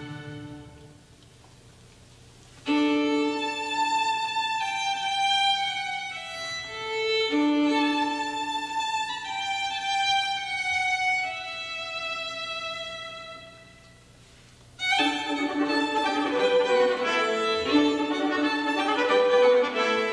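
Solo violin playing an unaccompanied passage: after a short pause, a slow phrase of long held notes, then another pause, and from about fifteen seconds in a faster run of many quick notes.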